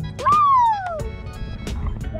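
A person's high-pitched "woo" cheer, lasting under a second soon after the start and falling steadily in pitch. It sits over background music with a steady beat.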